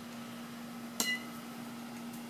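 A metal youth baseball bat hitting a ball off a batting tee about a second in: one sharp crack with a brief ringing ping.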